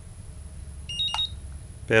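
Turnigy Accucell 6 balance charger's beeper giving a quick pair of short high beeps with a click about a second in, as the held Enter button confirms the settings and the charger starts its battery check.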